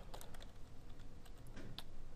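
Computer keyboard typing: a few separate keystrokes near the start, a short pause, then a couple more near the end.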